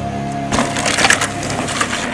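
Crashing, splintering sound effect as an animated logo breaks apart, starting about half a second in and running about two seconds with several sharp cracks, over background music.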